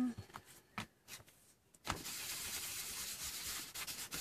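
A hand rubbing across collaged paper, a steady dry scrubbing that starts about two seconds in, after a few light taps.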